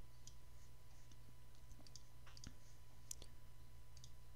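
A few faint, scattered computer mouse clicks over a low, steady hum.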